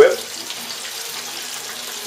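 Chicken wing tips frying in a pot of hot oil: a steady, even sizzle.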